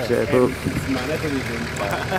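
Voices of onlookers over a Nissan Patrol 4x4's engine running at a low, steady idle as it crawls slowly over rock.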